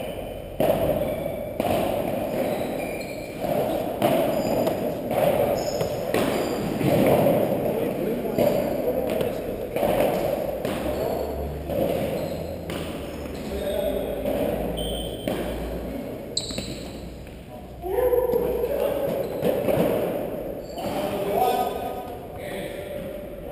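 Padel rally: sharp pops of rackets striking the ball and the ball bouncing off the floor and walls, roughly once a second, echoing in a large indoor hall. Voices murmur and call out throughout.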